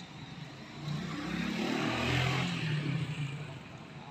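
A motor vehicle passing by: its engine and road noise grow louder from about a second in, peak around the middle, then fade away.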